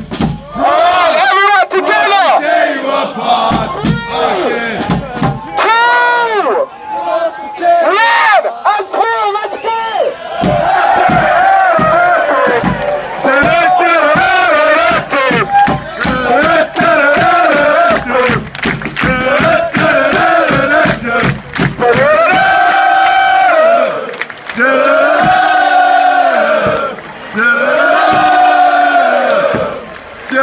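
Football supporters' crowd chanting and singing together loudly, with many sharp beats running through it. Near the end come three long sung phrases of about two seconds each.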